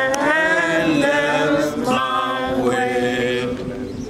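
A group of mourners singing together, several voices holding long, sliding notes.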